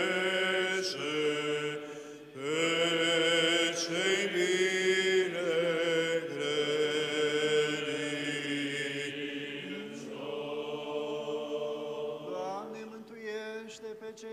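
Orthodox liturgical chant in Romanian, Byzantine style: a wavering melodic voice line sung over a low held drone (ison) that steps to a new pitch a few times, with short breaths between phrases.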